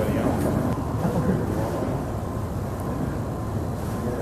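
Steady low rumble of a crowded room, with faint, indistinct voices murmuring in the first second or so.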